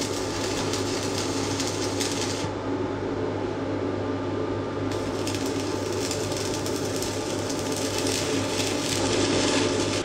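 Inverter arc welder striking a weld: a steady crackle and sizzle of the arc over a low steady hum, its hiss thinning briefly a few seconds in.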